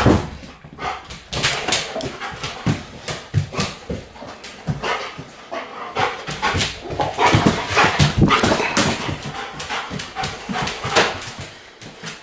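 A Malinois–German Shepherd cross dog searching a small tiled bathroom, with many quick clicks and scuffs as it moves about the hard floor and dog noises mixed in.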